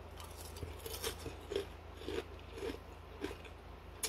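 A person chewing a mouthful of cereal soaked in water, with faint short sounds of the chewing about every half second.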